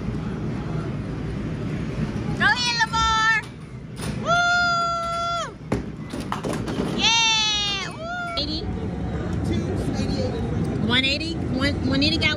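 Arcade din with electronic game-machine sounds: a short stepped jingle, then a held flat electronic tone, a sharp click, and a quick run of falling chirps.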